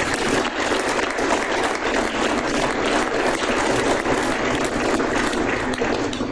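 Audience applauding: many hands clapping in a dense, steady stream.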